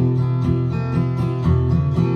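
Steel-string acoustic guitar strummed in a steady rhythm, chords ringing on between the strokes.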